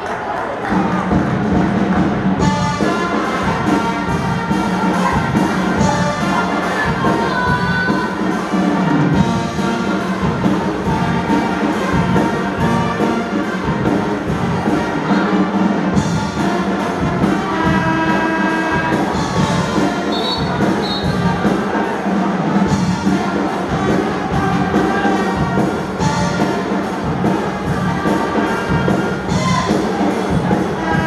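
Pep band brass section playing an upbeat tune with a steady beat in a large arena.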